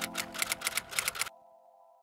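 Typewriter-style clicking sound effect, about seven quick clicks a second, over the fading end of the outro music. Both stop abruptly about 1.3 seconds in, leaving a faint held chord that dies away.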